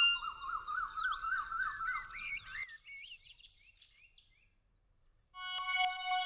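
Birds chirping and warbling, fading away over a few seconds into near silence. Near the end a sustained musical chord of steady held tones comes in.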